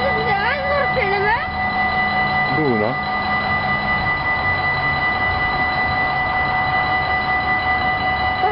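Railway level crossing warning bell ringing continuously while the crossing is closed for an approaching train. A low engine hum stops about halfway through, and a voice is heard near the start.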